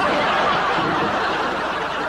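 A studio audience laughing, a dense steady crowd laugh.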